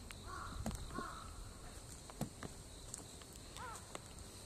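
Faint bird calls: two short calls close together early on, then a brief call whose pitch bends near the end, with scattered light clicks.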